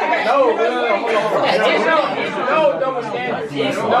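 Several people talking over one another at once, a crowd of overlapping voices in lively group chatter.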